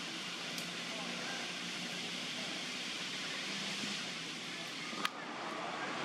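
Steady outdoor ambience: an even hiss with faint distant voices, and a single sharp click about five seconds in.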